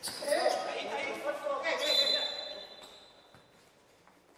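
Futsal players shouting and calling to each other in an echoing sports hall, with ball and feet sounds on the court floor. The shouting dies down over the last second or so.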